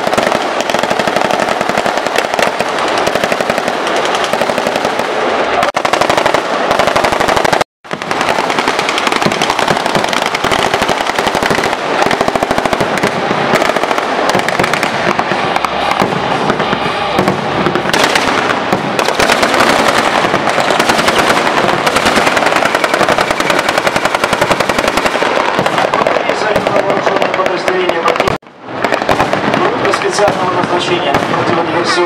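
Loud, continuous rapid automatic gunfire: dense, unbroken strings of shots. It cuts out abruptly for a moment about eight seconds in and again near the end.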